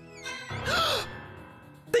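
A short, breathy startled gasp from a person, about half a second in, over quiet horror-trailer music.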